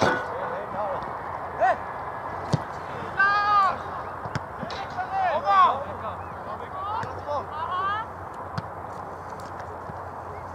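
Footballers and people on the touchline shouting short calls across an open pitch during play, several brief wordless yells rising and falling in pitch over outdoor background noise.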